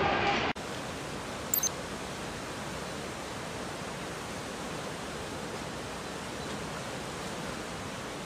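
The flooded Oria river rushing in spate, a steady even wash of churning floodwater, with one brief sharp sound about a second and a half in.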